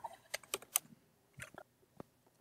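Typing on a computer keyboard: a handful of separate keystrokes in the first second and a half as a terminal command is entered.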